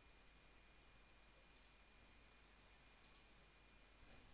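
Near silence: faint room tone with a thin steady whine, broken by two faint short clicks, one about a second and a half in and one about three seconds in.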